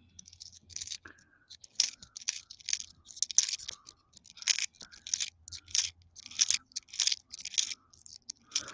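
Canadian nickels and their paper roll wrapper handled by hand: a string of short, irregular crinkles and clicks, two or three a second.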